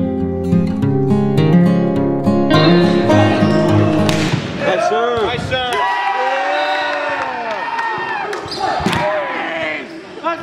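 Acoustic guitar music for about the first four seconds, then the sound of a volleyball match in an echoing gym. There are shouting voices and drawn-out calls, with a few sharp smacks of the ball.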